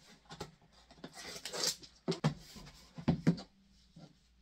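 Cardboard shipping box being handled and closed by hand: rustling about a second in, then a few sharp taps and knocks in the second half.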